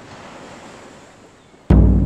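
A faint wash of surf, then about 1.7 s in a single sudden deep booming hit, like a big drum, that rings on and dies away slowly.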